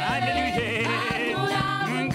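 A gospel praise team singing into microphones, several voices over a steady held bass line.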